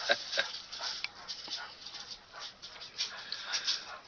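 Dry fallen leaves crackling and rustling in quick, irregular bursts as a dog roots around in them, hunting for critters.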